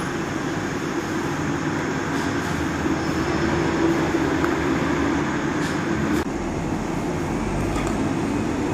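Steady noise of busy road traffic, cars, taxis and buses, with a low droning engine hum. About six seconds in the sound shifts to a deeper rumble.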